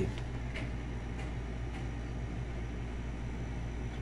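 Steady low background rumble with a few faint clicks, no speech.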